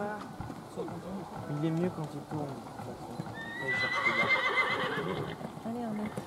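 A horse whinnying, one long high, wavering neigh starting about halfway through and lasting about two seconds, over the soft hoofbeats of a horse trotting on a sand arena.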